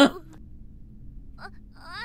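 A man's laugh ends right at the start. After a quiet pause, a young girl's high, wavering, whimpering voice comes in near the end, stammering an embarrassed apology in an anime soundtrack.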